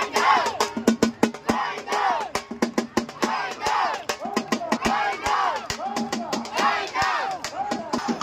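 Drums beating fast and irregularly, with a crowd repeatedly shouting and whooping over them.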